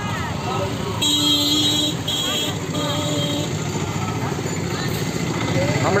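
Street traffic running, with a vehicle horn tooting three times: one toot about a second long, about a second in, then two shorter ones. Voices murmur in the background.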